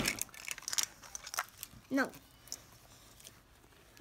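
Plastic toy capsule and its foil wrapper being handled and pulled apart: scattered crinkles and small clicks, mostly in the first second and a half.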